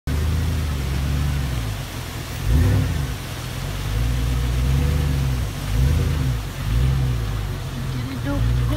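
GMC Denali SUV's engine running as it drives slowly up on a gravel road, its low rumble swelling and easing several times.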